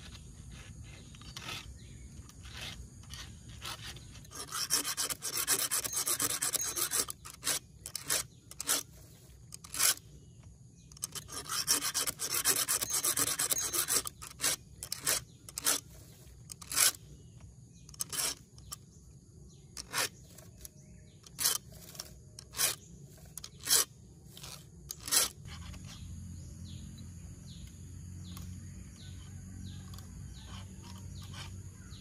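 A file rasping across the cutting teeth of a chainsaw chain as it is sharpened by hand: two runs of quick back-and-forth strokes, then single strokes about a second apart, stopping near the end.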